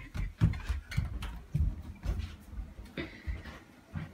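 Footsteps on a wooden floor: soft, irregular low thuds, about two or three a second.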